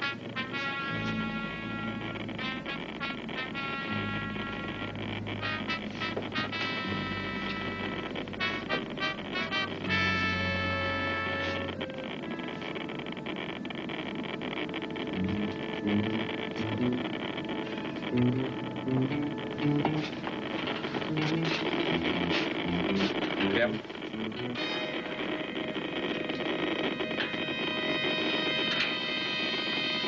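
Dramatic suspense background music: quick repeated short notes over a low held tone, then a lower figure of short stepping notes, ending in held higher notes.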